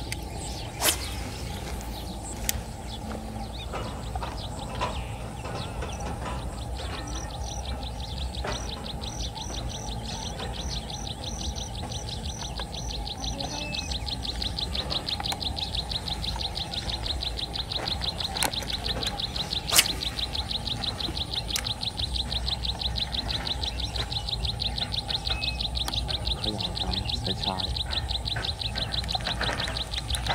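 An animal's high, fast-pulsing trill starts about seven seconds in and grows louder about halfway through, over a steady low outdoor background. A few sharp clicks stand out, the loudest about two-thirds of the way through.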